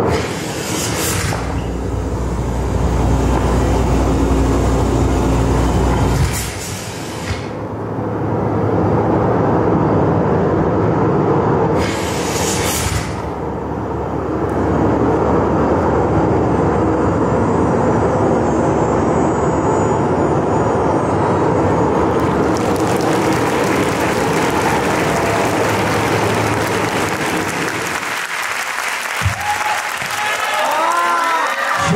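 Loud performance soundtrack over a hall PA, made of heavy low rumbling and noisy effects rather than a clear tune, with three rising whooshes in the first half. About three-quarters of the way through an even hiss joins in, which fits crowd cheering and applause.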